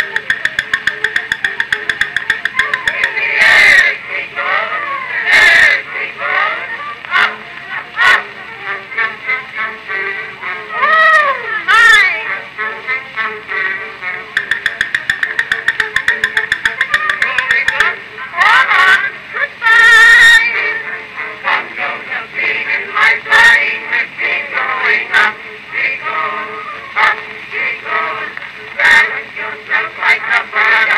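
An early acoustic cylinder recording of a comic song duet with small orchestra, played back mechanically through the horn of a circa-1899 Columbia Type AT Graphophone. It has stretches of fast, evenly repeated notes.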